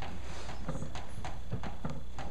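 Chalk on a blackboard while writing: a string of irregular sharp taps and short scrapes.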